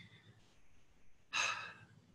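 A man's single short, breathy exhale about one and a half seconds in, like a soft sigh through a smile.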